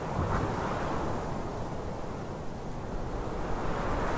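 Steady rushing noise like wind, with a slight swell about half a second in; no music or voice.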